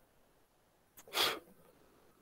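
A person's single short sneeze about a second in.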